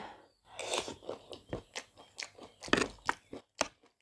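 Close-miked mouth sounds of someone chewing spicy aalu nimki, a crunchy snack coated in chilli sauce: an irregular run of crunches, the loudest a little under three seconds in.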